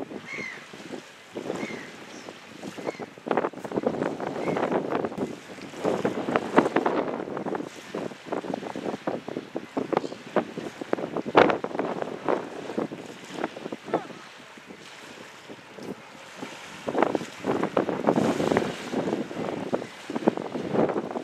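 Gusting wind buffeting a camcorder microphone: uneven surges of rumbling, crackling noise that swell and drop every second or two, louder around the middle and again near the end.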